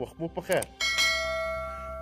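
A bell chime sound effect struck once about a second in, ringing with several steady overtones and slowly fading.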